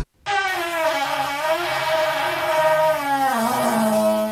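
A long, buzzy, horn-like held tone that starts just after a brief gap and sags slowly in pitch twice before settling.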